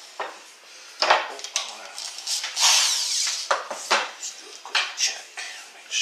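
Metal tools and drill bits clinking, knocking and scraping on a wooden workbench: a run of sharp separate clicks with a longer scraping rattle in the middle.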